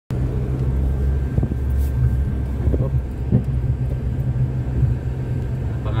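Steady low rumble of a car's engine and tyres heard from inside the cabin while driving, with a few faint knocks in the first half.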